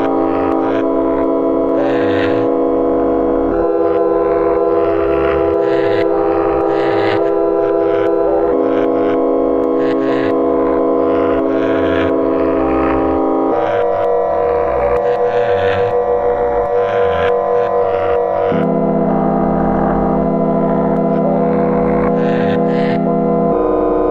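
Live-coded electroacoustic music from SuperCollider: layered, sustained synthetic drone chords that shift to a new pitch about every five seconds, over short noisy hits recurring roughly once a second and a low rumbling pulse.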